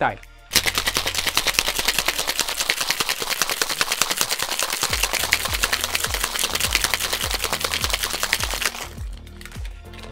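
Ice rattling in a two-piece metal cocktail shaker shaken hard, a fast steady rattle that starts about half a second in and stops near nine seconds in. The drink is being shaken with ice to chill it and work air into it.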